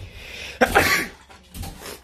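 A person's breathy, hissing vocal burst, loud for about half a second, followed by a shorter one near the end.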